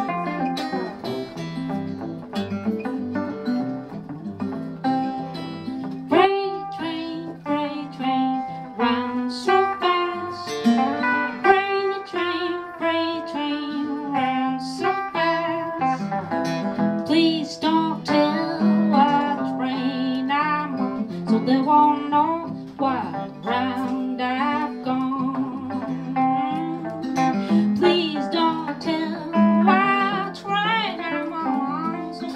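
An acoustic guitar and a hollow-body electric guitar play a fingerpicked folk instrumental break together, in a run of plucked, fading notes. Near the end a woman's singing voice comes back in.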